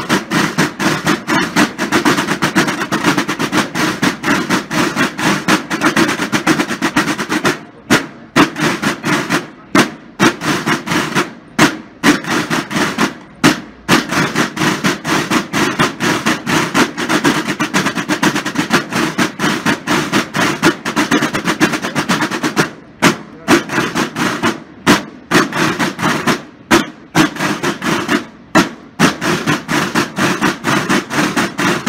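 Marching snare drums playing a rapid parade cadence with rolls, breaking off briefly every couple of seconds in places.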